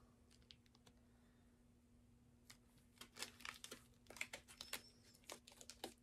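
Faint crinkling and clicking of a plastic-wrapped wax melt being handled, a scatter of small irregular clicks starting about halfway through.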